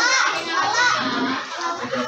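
Many children's voices chattering and calling out at once, with music mixed in.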